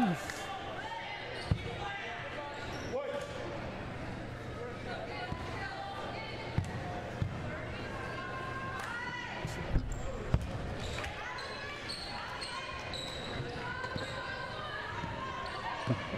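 Basketball bouncing on a hardwood gym floor, a few separate thuds with the loudest pair about ten seconds in, over steady murmur of crowd chatter in a large gym.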